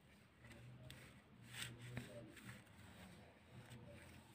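Faint scraping and light clicks of a knife blade cutting through coconut barfi and touching the steel plate beneath, with a sharper click about two seconds in.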